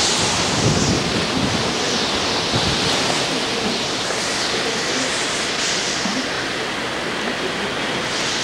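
Hurricane wind rushing steadily, with gusts swelling and falling away, and low rumbling buffets of wind on the microphone in the first few seconds.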